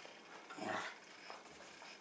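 A Jack Russell terrier begging for food makes one short, faint sound about half a second in, a small whimper or grumble.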